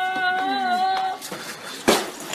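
A girl's high voice holding one long shrill note, cutting off about a second in; a single sharp knock follows near the end.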